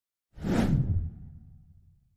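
A whoosh sound effect for a logo reveal. It starts suddenly with a bright, full swish, then leaves a deep rumble that fades away over about a second.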